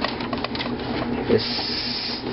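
A computer drive being slid into its metal drive bay: a steady scraping, rubbing sound that turns into a brighter hiss in the last half second.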